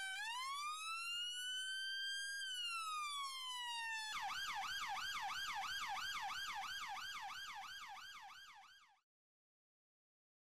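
Electronic police siren: one slow wail that rises and then falls over about four seconds, then a fast yelp of about three to four sweeps a second that fades out and stops near the end.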